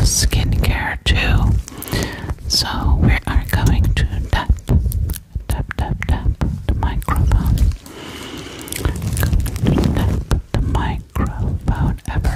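Close, breathy whispering right on a Blue Yeti microphone, mixed with the dull thuds, rubs and crackles of the microphone being touched and brushed.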